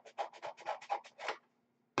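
Scissors cutting through a sheet of coloured paper: a quick run of short, crisp snips that stops about one and a half seconds in, followed by a sharp tap at the end.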